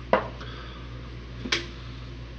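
Hot sauce bottle set down on a hard surface with a sharp knock, followed about a second and a half later by a lighter click.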